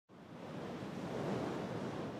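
A steady rushing, wind-like noise that fades in from silence over the first second and then holds even.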